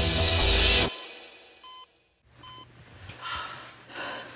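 Dramatic music score swelling, then cutting off suddenly about a second in. In the hush, a hospital heart monitor gives two short beeps under a second apart: the patient's heartbeat returning after the resuscitation.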